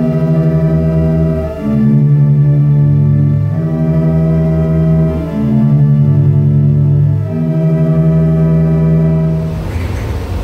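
Pipe organ played from a three-manual console: slow, sustained chords with a wavering tremolo, changing about every two seconds. The sound comes from pipes in a separate room. The chords stop shortly before the end.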